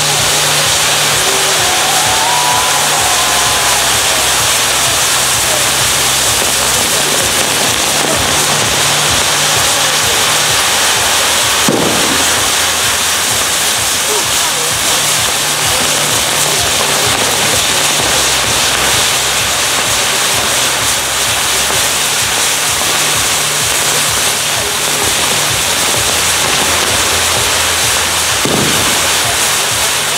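Maltese ground fireworks (nar tal-art) spinning on a wheeled frame give off a continuous loud, dense crackling hiss. Steady low musical notes change every second or two underneath, and two sharp bangs come about twelve seconds in and near the end.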